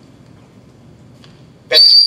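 Quiet room tone, then about 1.7 seconds in a loud, steady, high-pitched whistle-like tone starts suddenly and holds at one pitch.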